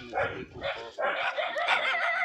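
Speech: a man speaking Hindi in short, broken phrases close to the microphone.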